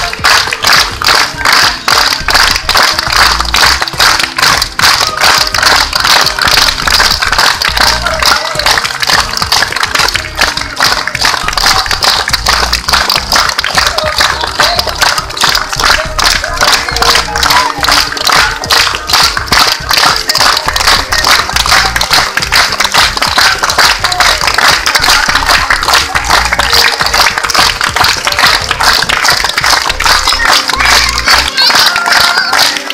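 A group clapping hands together in a fast, even rhythm, with music playing over a loudspeaker.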